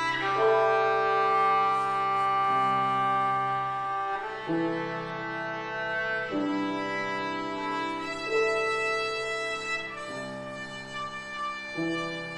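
A bowed string instrument playing a slow classical passage of long held notes, each pitch changing about every two seconds, with lower notes sounding beneath.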